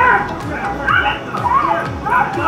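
A dog barking and yelping in short sharp calls, over background music with a steady low beat.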